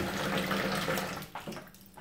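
Kitchen tap running, its stream falling into a stainless steel sink, then shut off about a second and a half in.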